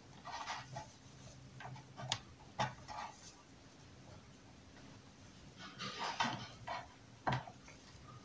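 Faint rustling of pine needles and soft scraping clicks as training wire is wound around the branches of a nursery pine being wired for bonsai, in scattered short bursts with a small cluster about six seconds in.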